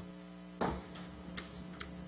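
Low room tone with a steady hum. A soft knock comes a little after half a second in, and two faint clicks follow later.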